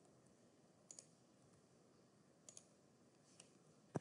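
A few faint, short computer mouse clicks against near silence.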